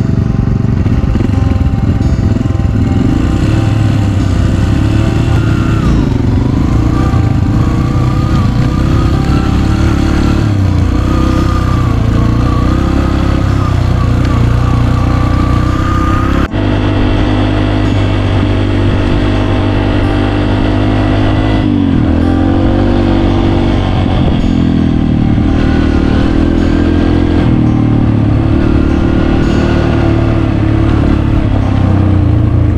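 Yamaha TTR dirt bike's single-cylinder four-stroke engine running while being ridden along a dirt trail, the revs rising and falling with the throttle. The sound changes abruptly about halfway through.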